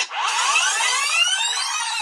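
Tape-rewind sound effect: a dense, warbling whoosh of sped-up audio that climbs steadily in pitch for about two seconds.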